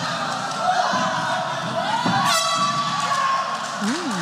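End-of-round horn sounding once, about two seconds in, a steady held tone lasting roughly a second, over crowd noise from the arena.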